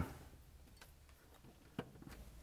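Near silence with a faint tick about a second in and one sharper click near the end: a wire's terminal being pushed onto its connection at the distributor.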